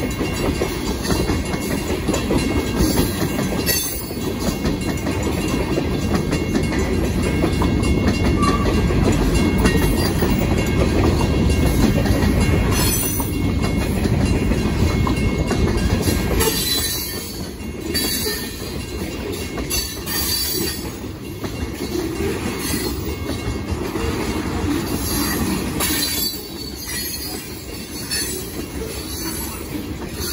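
Freight train of tank cars rolling past close by: a steady rumble and clatter of steel wheels on the rails. It is loudest in the first half and eases a little after about seventeen seconds.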